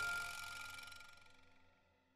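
The closing chord of a gentle piano tune ringing out and fading away to silence about one and a half seconds in.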